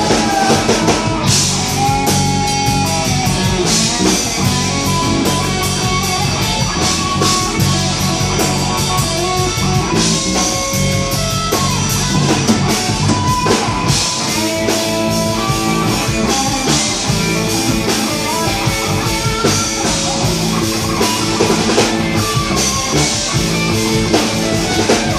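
Live rock band playing an instrumental passage: electric guitar lead with sustained, bending notes over bass guitar and a drum kit.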